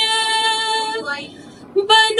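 A woman singing a naat unaccompanied into a microphone, amplified through a loudspeaker. She holds a long, steady note that fades about halfway through, takes a short breath, and starts the next line just before the end.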